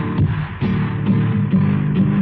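Acoustic guitar playing chords in an instrumental passage between sung verses, struck again and again.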